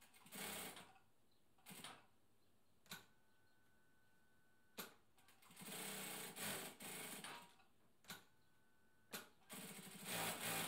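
Siruba DL7200 industrial lockstitch needle-feed sewing machine stitching in short runs: a brief one near the start, a longer run of about two seconds in the middle, and another starting near the end. Sharp single clicks from the machine fall between the runs.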